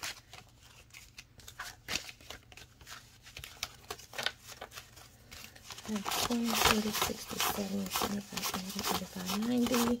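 Paper banknotes being handled and counted by hand: a run of small, crisp crinkles and flicks as the bills are picked up and fanned, with a voice joining about six seconds in.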